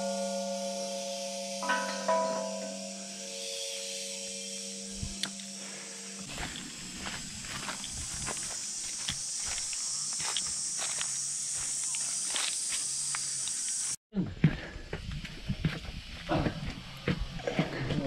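Large hanging metal temple bell ringing, struck again about two seconds in, its hum and overtones fading slowly until cut off abruptly about six seconds in. After that, footsteps on dry leaves and rock.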